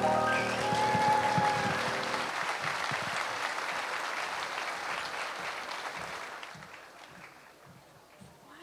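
Audience applauding as the last chord of the song's accompaniment dies away about two seconds in; the applause then fades out near the end.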